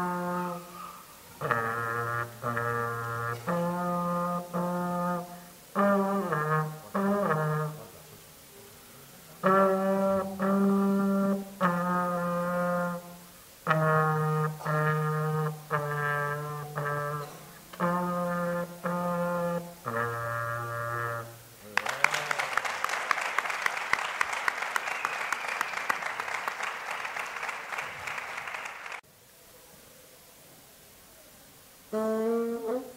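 A child playing a solo melody on a trombone: held notes in short phrases with brief breaths between them, with a few slide glides in pitch about seven seconds in. The playing ends about 22 seconds in and an audience claps for about seven seconds until the sound cuts off suddenly.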